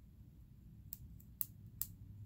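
Three faint, sharp clicks about half a second apart, over a low steady room hum.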